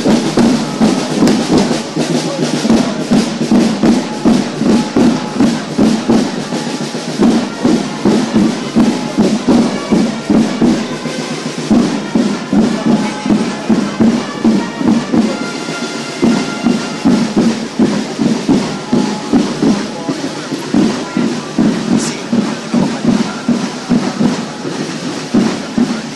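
Drums of a flag-wavers' troupe beating a steady march rhythm, about two beats a second, with some held tones over it.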